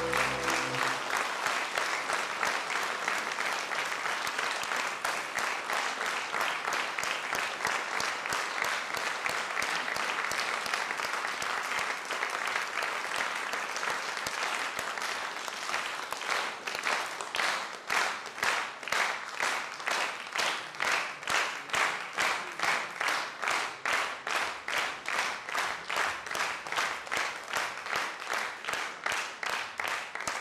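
The last held note of a song dies away about a second in and an audience breaks into applause. About halfway through, the applause turns into rhythmic clapping in unison, about two claps a second.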